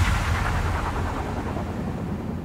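Fading tail of a hardstyle track after the beat stops: a low rumbling wash of noise dying away slowly and steadily.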